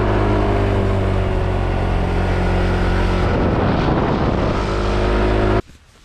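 Scooter engine running steadily while riding up a steep road, with wind rushing over the microphone. The sound cuts off suddenly near the end.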